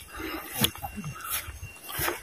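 Footsteps on a grassy dirt path, about one step every 0.7 seconds, with brief low voices in between.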